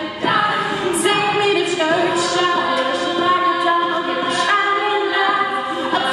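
All-female a cappella group singing: a solo voice over sustained backing harmonies, with a few sharp beatboxed percussion hits.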